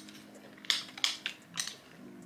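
Chewing a mouthful of yogurt parfait with crunchy granola and apple: about four short crunches over a second.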